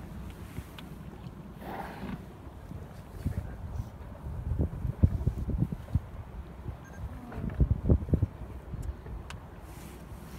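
Wind buffeting the microphone and water lapping against a small boat, with stronger low gusts in the middle and again near the end.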